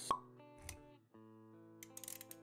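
Intro-animation sound design: one short, sharp sound effect just after the start, the loudest moment, then a softer low thump a little over half a second in, followed by background music with held notes.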